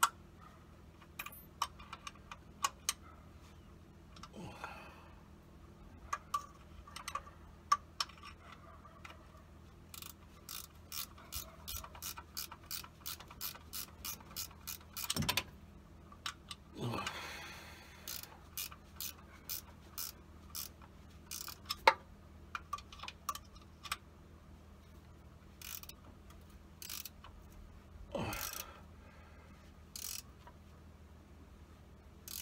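Hand ratchet wrench clicking in short runs as a fitting is worked during an oil change, with scattered sharp metallic clicks. A few louder rustles of movement come near the middle and near the end.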